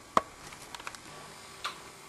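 A sharp click, then a few fainter ticks.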